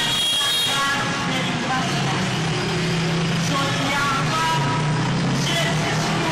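Large street crowd: many voices mingling loudly and continuously, with a steady low hum underneath from about two seconds in.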